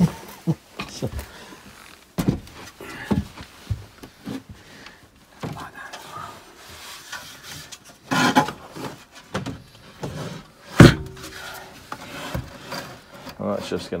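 Knocks, scrapes and rubbing as a metal-cased Victron Multiplus inverter/charger is handled and slid into a wooden under-seat locker, with one sharp knock late on, the loudest.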